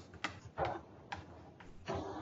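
A pen tapping and clicking against an interactive whiteboard while a word is written by hand: about five short, sharp clicks, irregularly spaced.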